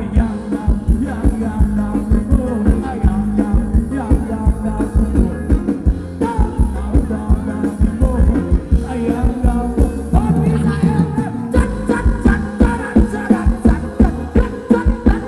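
Loud amplified band music for ramwong dancing, with a steady, driving drum beat and a singing voice.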